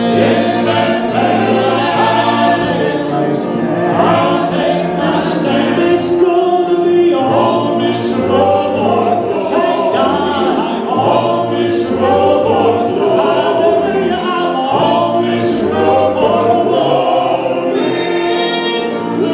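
Male gospel quartet singing in harmony through microphones and a PA, with a bass voice holding low notes under the upper parts.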